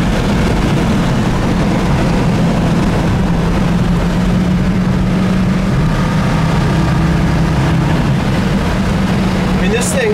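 Ford 289 V8 with dual exhaust running at a steady highway cruise, heard from inside the cabin as a low, even drone with road and wind noise.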